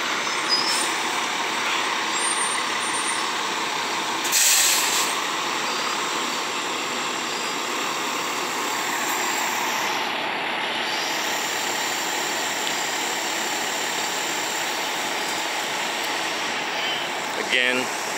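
Steady, continuous rumble and hiss of fire engines running at the scene, with a short, louder burst of hiss about four seconds in.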